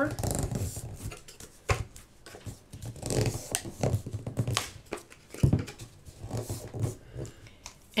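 Paper being folded over the edges of a chipboard board and pressed down by hand: irregular paper rustles and crinkles, with a few sharp taps of the board on the cutting mat.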